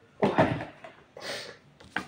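A short exclamation of 'oh', then a brief rustle and a sharp click near the end from something being handled at a table.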